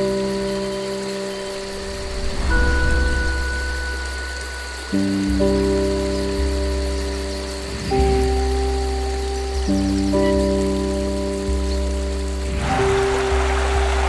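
Background music: slow, sustained chords over a deep bass, changing every two to three seconds, with a swell of hiss near the end.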